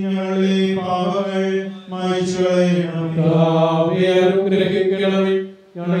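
A priest chanting a liturgical prayer, one male voice on long held notes, with short breaks for breath about two seconds in and just before the end.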